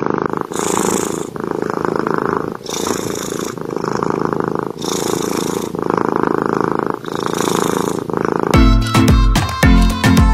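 Long-haired tabby cat purring loudly, close up, as its head is stroked. The purr swells and fades in a slow cycle of about two seconds with each breath in and out. Music with strong bass notes cuts in near the end.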